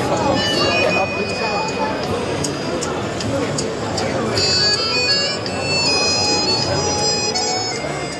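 A high-pitched reed or wind instrument plays a melody of held notes that change in steps, loudest in the second half, over the chatter of a street crowd.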